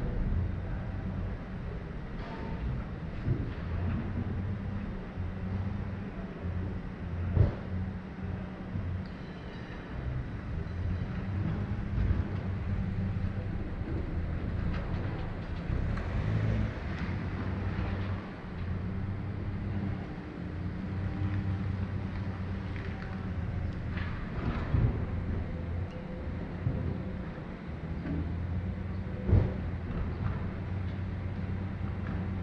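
Hyundai YF Sonata engine running at idle with a steady low hum as the car is moved a short way. A couple of sharp knocks, one about seven seconds in and one near the end.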